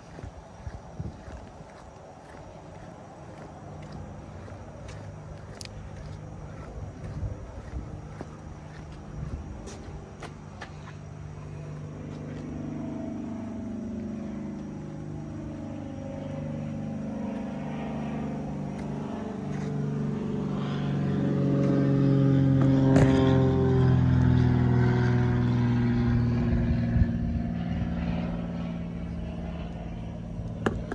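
Ferret scout car's Rolls-Royce six-cylinder petrol engine running as the armoured car drives about. The engine grows steadily louder through the middle, is loudest a little after two-thirds of the way in, then eases off.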